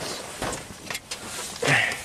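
Handling noise from a new plastic distributor cap and its packaging: a few light clicks and knocks, the sharpest about half a second in, and some rustling, with a short louder rustle near the end.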